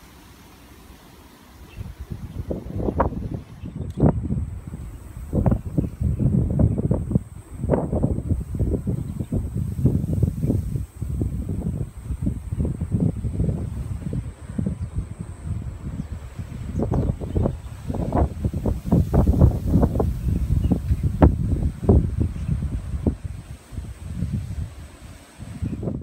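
Sea wind buffeting the microphone in irregular gusts, beginning about two seconds in and surging and easing unevenly.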